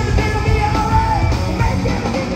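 Rock band playing live: a male lead singer belting a held high note that falls off about a second in, over electric guitar, bass and drums.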